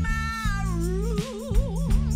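Live rock band: a female lead singer holds one long note that slides down about half a second in and then wavers in a wide vibrato, over a sustained electric guitar and bass chord with a few drum hits.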